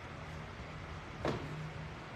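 A low, steady background rumble, with one short, sharp knock about a second and a half in.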